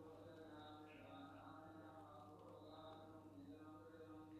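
Faint chanting: a voice holding long, slowly wavering notes, heard very quietly over a low steady hum.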